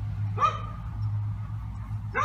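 A small child's brief high-pitched whine about half a second in, rising in pitch, over a steady low rumble.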